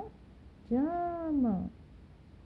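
A woman's voice drawing out a single spoken syllable for about a second, its pitch rising and then falling, as she reads a word slowly.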